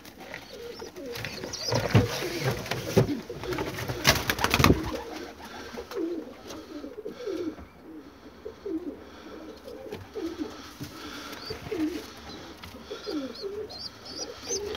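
Domestic pigeons in a loft cooing over and over, many short rolling coos overlapping, with a few sharp knocks or rustles in the first five seconds.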